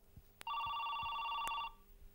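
A desk telephone ringing: one electronic, trilling ring lasting just over a second.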